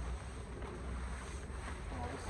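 Wind buffeting the microphone in a steady low rumble, with soft rustling of nylon tent fabric being grabbed and pulled starting after about a second and a half.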